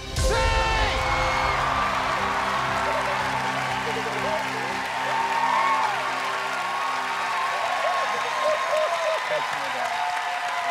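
A game-show musical sting hits suddenly and holds a sustained chord for the correct-answer reveal. Studio audience and children cheer, whoop and applaud over it.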